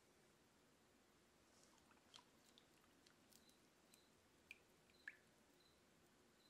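Near silence, with a few faint small clicks in the second half.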